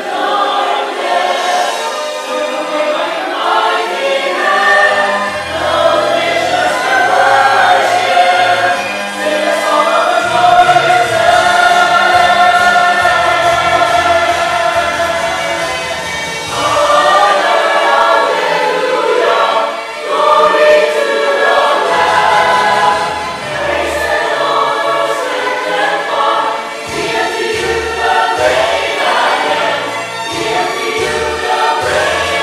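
Church choir singing a Christian song, with a man singing lead into a microphone, over an accompaniment with a stepping bass line.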